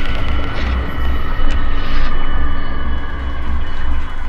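Electronic intro sound design for an animated logo: a deep, pulsing bass rumble under several steady, sustained high tones, with no melody.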